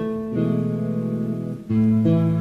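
Instrumental backing of a slow romantic song, with sustained chords changing about a third of a second in and again near the end, and no singing.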